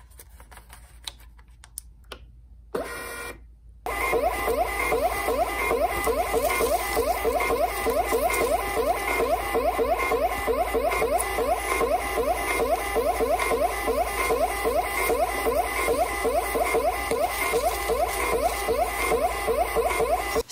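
DYMO LabelWriter 450 Turbo thermal label printer: a light click as its front button is pressed about two seconds in and a brief run just before four seconds. Then its feed motor runs steadily with a fast, even pulse while it prints and feeds out a strip of labels.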